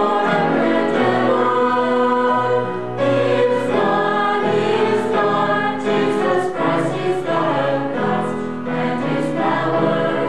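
Mixed choir of men and women singing held chords, with a short break between phrases about three seconds in.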